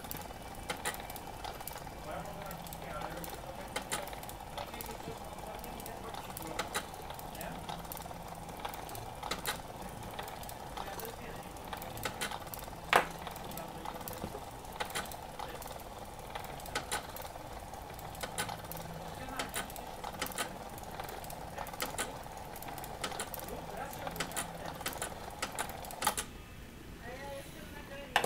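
Electromechanical timer installation running after the Visomat exposure timer is wound up and set to 30: a steady motor whirr with a scatter of irregular mechanical clicks, like a typewriter. The whirr stops about 26 seconds in as the timer runs out.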